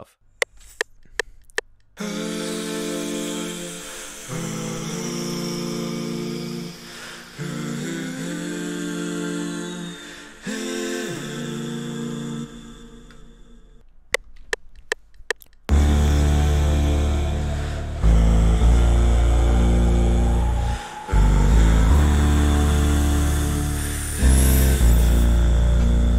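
Playback of a beat made entirely from one man's voice: layered hummed vocal chords held and changing every couple of seconds. About two-thirds of the way in, a loud, deep vocal bass comes in under the chords, together with a rising sweep effect that is also voiced.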